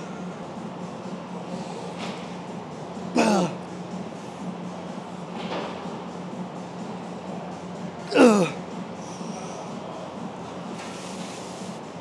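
A man grunting with effort twice, about three and eight seconds in, each a short loud cry that falls in pitch, as he strains through the last heavy reps of a set on a press machine. A steady low hum runs underneath.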